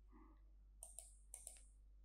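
Faint computer mouse clicks, two pairs about half a second apart, over a low steady hum.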